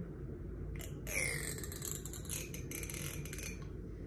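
Scratching on a scalp through the hair: a quick run of dry, scratchy strokes from about a second in until shortly before the end, over a low steady hum.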